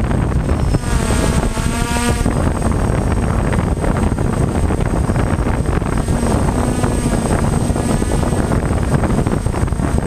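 DJI F550 hexacopter's electric motors and propellers whining, heard from the camera on the airframe under heavy wind buffeting. The motor pitch wavers up and down as the throttle changes, about a second in and again around seven seconds, over a thin steady high tone.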